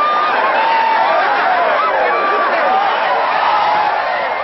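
A crowd of many voices talking and calling out over one another at a steady level.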